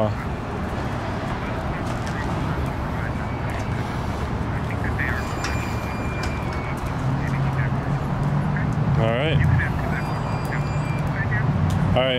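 Steady city street noise of passing traffic, with a lower engine hum swelling about seven to ten seconds in. About nine seconds in there is a short voice-like call.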